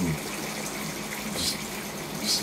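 Steady background hiss with a low, even hum underneath, and no distinct event.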